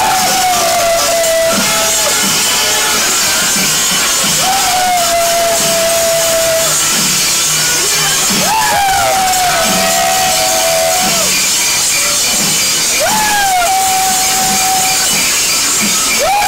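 Kerala temple ensemble playing: kombu horns sound long calls, each swooping up and then held for about two seconds, about four times, over steady drumming and a constant high clashing of cymbals.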